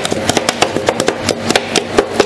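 Two steel spatulas chopping and crushing watermelon pieces against the frozen steel plate of a roll ice cream machine: a rapid, even clacking of metal on metal, about seven strikes a second.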